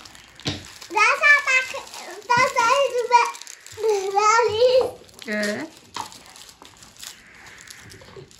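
High-pitched voices of young children talking and calling out in several short phrases.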